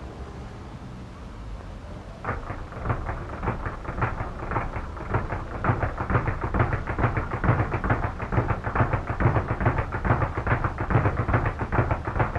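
Speed bag being punched in a fast, steady rattle of about five or six hits a second, starting about two seconds in, over a steady soundtrack hiss.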